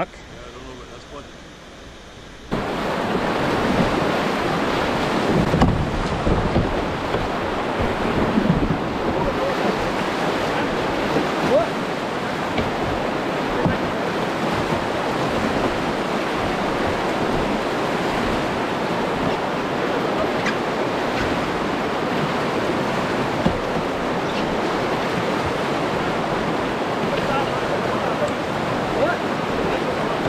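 Whitewater rapids rushing and churning around a canoe, a steady loud wash of water that starts suddenly about two and a half seconds in after quieter flat water. Wind buffets the microphone.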